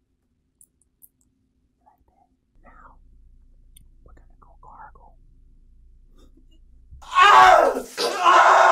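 Faint close-miked whispery mouth and voice sounds over a low hum, then about seven seconds in a sudden loud vocal outburst like a yell.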